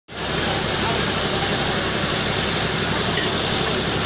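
Loud, steady machine noise with a low hum running under it, mixed with indistinct voices of people around.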